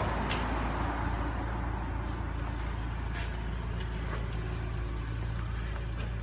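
Steady low background hum with a faint even hiss, and a couple of faint clicks.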